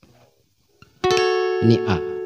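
Acoustic guitar plucked high up the neck about a second in, its notes ringing on and slowly fading. A brief vocal sound comes over it near the end.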